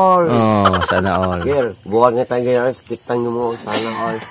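A man's voice making repeated wordless syllables, about three a second, with the pitch swooping up and down.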